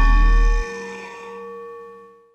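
The ending of a rap track: the deep bass cuts off about half a second in, leaving one struck, bell-like note ringing out and fading away.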